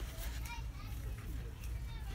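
Shop background: faint, distant chatter with children's voices over a steady low hum.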